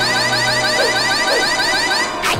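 Cartoon sound effect for a powerful blow of air: a loud, high whistle warbling rapidly like an alarm, held at an even level over background music.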